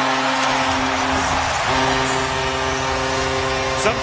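Arena goal horn sounding one long, steady low blast over a loudly cheering hockey crowd, right after the home team scores.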